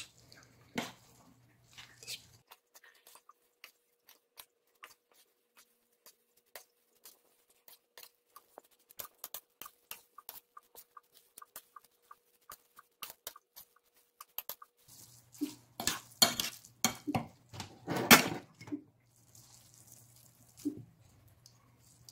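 A fork clicking and scraping against a plate as instant noodles are tossed with chilli sauce: a long run of light, irregular ticks that grows louder and busier for a few seconds late on.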